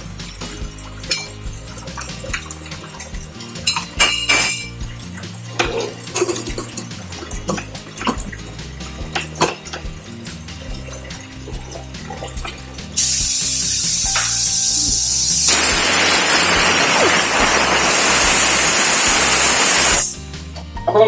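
Clinks and knocks of a stainless steel pressure cooker and its lid being handled and closed. About thirteen seconds in, a loud steady hiss starts suddenly, steam venting from the pressure cooker, and it grows fuller about two seconds later.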